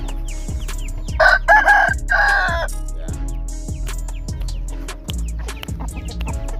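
A rooster crowing once, about a second in, a call of about a second and a half in three linked parts, over background music with a steady beat.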